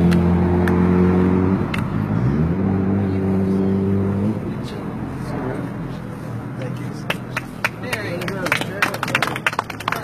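A motor vehicle's engine running with a steady hum, rising in pitch about two seconds in and cutting out around four seconds in. Later comes a run of sharp clicks and knocks.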